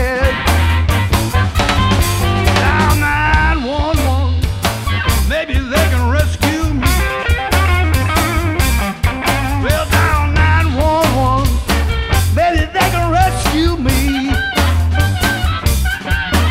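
Electric blues band playing live: a man sings into the microphone over electric guitar and a drum kit keeping a steady beat.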